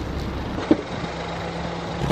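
A car running, a steady low rumble with a short click about two-thirds of a second in.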